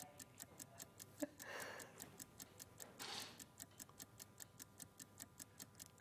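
Faint, fast, even clock-style ticking, about four ticks a second, from the countdown-timer sound effect of a TV shopping broadcast.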